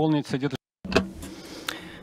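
A person's voice speaking briefly, cut off by a short gap of dead digital silence about half a second in, followed by quieter background sound.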